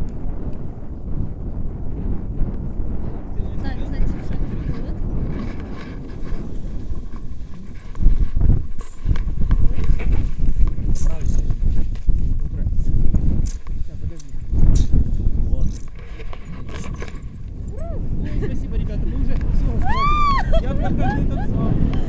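Wind buffeting the action camera's microphone as a tandem paraglider is launched, a low rumble that grows much louder for several seconds in the middle during the take-off run. Near the end a voice calls out with a rising and falling pitch.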